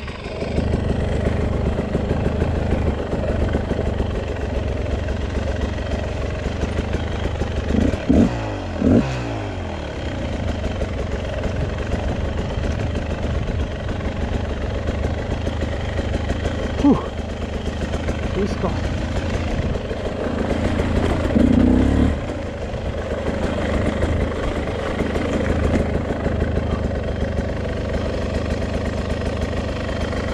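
Beta RR 300 single-cylinder two-stroke enduro motorcycle being ridden on a dirt trail, the engine running and changing revs with the throttle. About eight seconds in, the revs drop in a falling tone. A short knock comes a little past halfway, and a louder burst of throttle follows a few seconds later.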